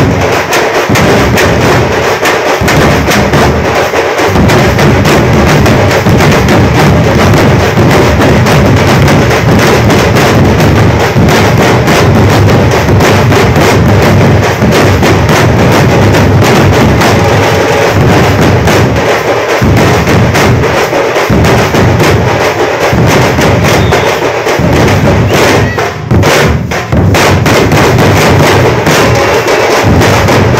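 A troupe of large drums beaten with wooden sticks, playing a loud, fast, continuous rhythm together, with a momentary break about four seconds before the end.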